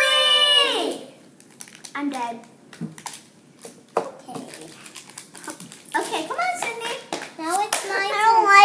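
Young girls' voices: a long, high excited exclamation falling in pitch in the first second, then brief wordless vocal sounds, with small clicks and taps of hands handling little plastic toys and packets.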